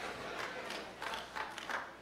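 A pause in a large hall: low room tone with faint murmur from a seated audience.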